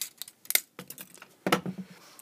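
Side cutters snipping through a lamp's thin plastic housing: a few sharp clicks about half a second apart.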